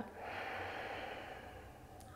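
A woman's long, full exhale, slowly fading, as she empties her lungs at the end of a round of Kapalbhati breathing.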